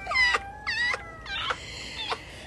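A person's voice: three short, high-pitched wailing cries that bend in pitch, like comic falsetto singing.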